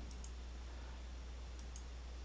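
Two faint computer mouse clicks, one about a quarter second in and another near the end, each a quick press-and-release pair, over a low steady electrical hum.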